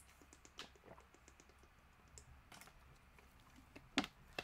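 Faint typing on a computer keyboard: irregular light key clicks, with a sharper click near the end.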